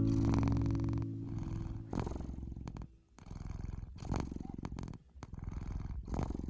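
Domestic cat purring in steady waves about a second apart, while the last guitar notes fade out in the first second.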